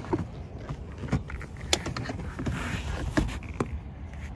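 Handling noise from a plastic car lip spoiler being moved about: several sharp clicks and knocks scattered through, over a steady low rumble.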